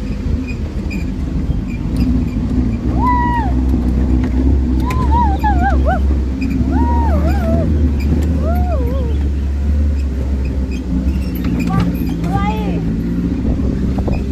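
Off-road Jeep's engine running with a steady low rumble as it drives over a rough dirt track. About five short high calls ride over it, each rising and then falling in pitch.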